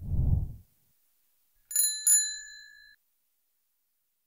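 Subscribe-button animation sound effect: a short low thump, then two quick bell dings about half a second apart, the second ringing on for about a second.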